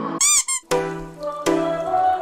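Two quick squeaky cartoon sound effects, each rising and then falling in pitch, followed less than a second in by K-pop dance music with a steady beat.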